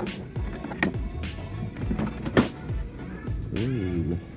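Several sharp plastic clicks and knocks as the latch of an ArtBin plastic storage case is undone and its lid swung open, over background music.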